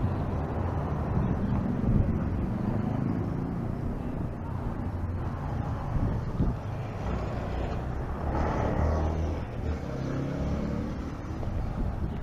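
Street traffic: car and motorcycle engines running close by, a steady low rumble that swells briefly about eight seconds in.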